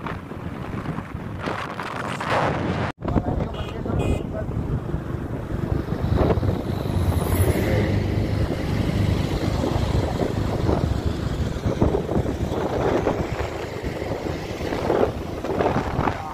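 Wind buffeting the microphone on a moving motorcycle, with engine and road noise underneath. The sound cuts out for an instant about three seconds in.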